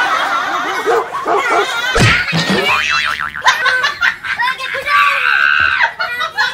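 Cartoon-style comedy sound effects, boing-like wobbling glides, mixed with voices and laughter, with a sharp hit about two seconds in and a held high tone near the end.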